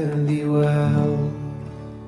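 A man singing a long held note, accompanied by an acoustic guitar, fading away toward the end.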